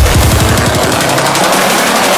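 Drum and bass track hitting a break: a rapid-fire run of drum hits, then the deep bass drops out about halfway through, leaving a noisy upper layer.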